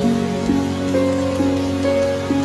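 Slow, soft piano music with a new note about every half second, over steady rain falling on a wet surface.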